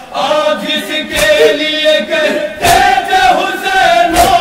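Men chanting a nauha lament together, led at a microphone, with group chest-beating (matam) strikes landing in unison about every second and a half.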